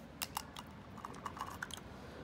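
Small clicks and crackles of plastic being handled: a few sharp clicks early on, then lighter ticking, as food packaging and a plastic water bottle are handled.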